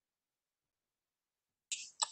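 Dead silence on a video-call audio line, then near the end a sudden short click and hiss as a participant's microphone comes on, just before he speaks.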